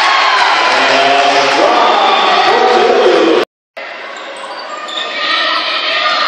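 Live game sound of a high school basketball game in a gym: crowd voices and shouts over a bouncing basketball. About three and a half seconds in the sound cuts off to a moment of silence, then comes back quieter and builds again.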